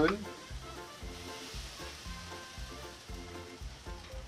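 Barbecue-marinated shark meat sizzling as pieces are laid on a hot gas grill grate: a steady frying hiss, over faint background music with a low, regular beat.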